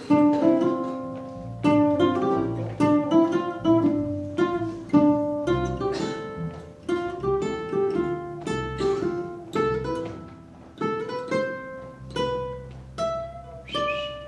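Ukuleles playing a plucked melody over strummed chords, each note ringing and fading.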